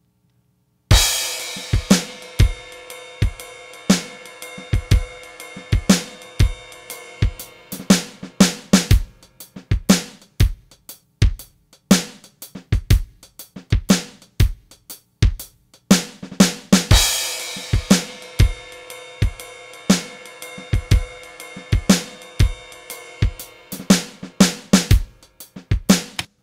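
A programmed drum kit played through a General MIDI synth, running a shuffle groove of bass drum, snare, hi-hat and cymbals. It starts about a second in with a crash cymbal, and a second crash about sixteen seconds later marks the pattern changing over.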